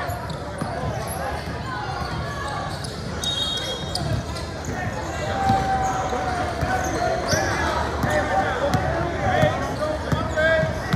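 Basketball thudding on a hardwood gym floor during a game, with a few short high sneaker squeaks, over indistinct voices and shouts echoing in a large gym.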